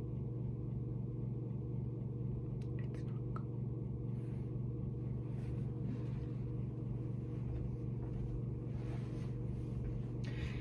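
A steady low hum runs throughout, with a few faint clicks and rustles about three seconds in.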